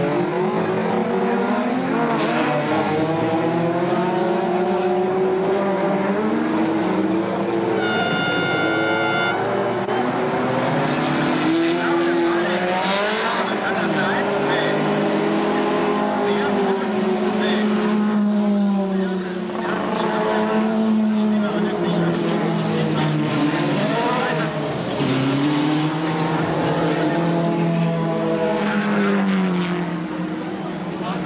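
Several racing car engines revving and passing on a wet track, their notes rising and falling as they change speed. About eight seconds in, a steady high-pitched tone sounds for about a second.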